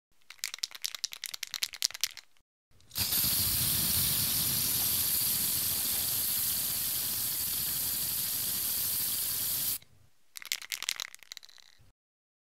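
Aerosol spray-paint can: the mixing ball rattles as the can is shaken, then a steady spray hiss lasts about seven seconds, then a shorter spell of rattling comes near the end.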